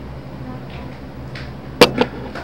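A small object handled on a tabletop: one sharp click near the end, with a softer one just after, over a low steady background noise.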